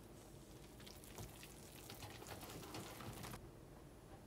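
Faint, rapid scraping and swishing of a silicone whisk stirring flour into a wet dough in a stainless steel bowl; it grows busier about a second in and stops abruptly near the end.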